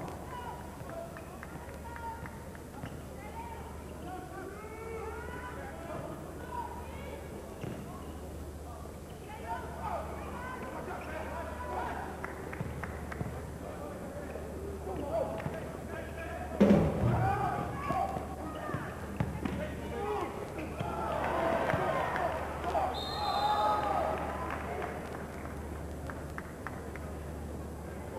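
Arena sound of a live basketball game: a steady murmur of crowd and player voices with the ball bouncing on the court, and a sudden thud about 17 seconds in. The crowd noise swells near the end, with a short high referee's whistle about 23 seconds in, calling a personal foul. A steady low hum runs underneath.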